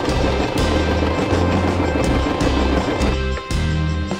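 Domestic electric sewing machine running in one fast continuous stitching burst that stops about three seconds in; the machine has gone stiff and slow, which its owner thinks needs lubricating. Background music with a steady bass line plays under it.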